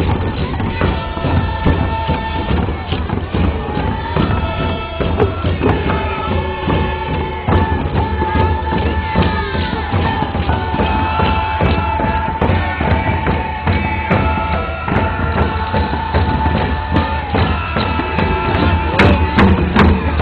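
A group of voices singing together, long held notes, accompanied by hand frame drums struck throughout.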